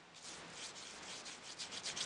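Paintbrush bristles scrubbing back and forth over cardstock, faint at first and building into quicker, stronger strokes near the end.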